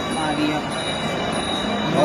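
A short, quiet spoken reply over steady background room noise, with constant high thin tones running through it.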